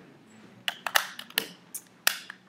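A quick run of sharp plastic clicks and knocks, about five of them starting a little under a second in, from a recording device being handled while its battery is changed.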